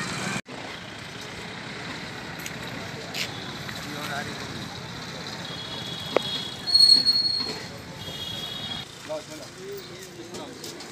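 Outdoor street ambience: steady traffic noise with faint voices, and a brief, loud high-pitched tone about seven seconds in.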